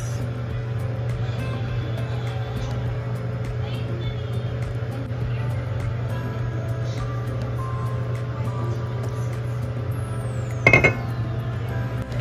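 A steady low hum, with one sharp clink of a small glass seasoning bottle near the end.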